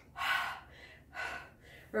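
A woman breathing hard, with two heavy breaths about half a second each, one near the start and one a little past the middle: she is catching her breath after exertion.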